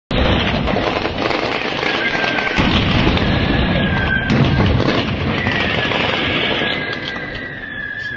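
Repeated bangs and pops of gunfire and grenades set off at a crowd of protesters, over the crowd's continuous din, with a few drawn-out shrill tones on top.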